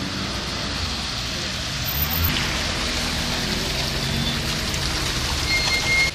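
Street traffic on a slushy, wet road: a steady hiss of car tyres running through melting snow and standing water. A short, thin high beep sounds near the end.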